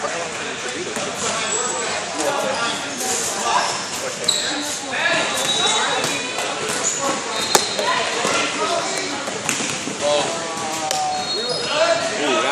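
A basketball bouncing on the court during play, with several sharp thuds, the sharpest about halfway through, and a few brief high squeaks, amid the voices of players and spectators echoing in a large gym.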